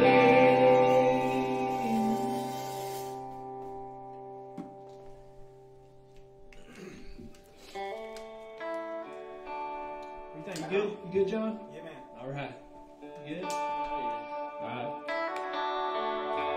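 A final guitar chord rings out and fades away over about six seconds. Then a guitar is picked in short, loose notes between songs.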